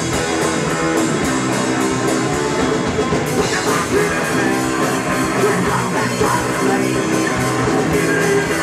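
Live rock band playing loud: electric guitars and a drum kit with steady cymbal hits, and a voice singing from about halfway in.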